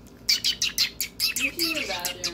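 Pet bird chirping: a rapid string of about a dozen short, high chirps over roughly a second and a half.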